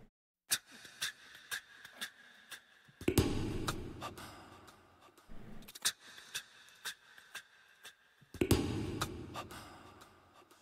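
A cappella vocal percussion opening the song: sharp mouth clicks at a steady beat of about two a second, with two breathy swells that fade out over a few seconds each.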